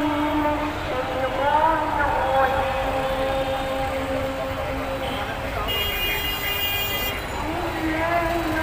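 Busy city street traffic with long horn blasts and voices over a steady traffic din; a higher, brighter horn sounds for about a second and a half near the end.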